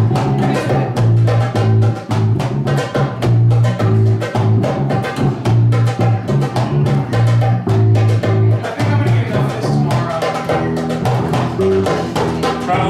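Upright double bass plucked in a repeating low line, with hand drums, including a small frame drum, playing a fast, dense rhythm over it in a Turkish-style groove.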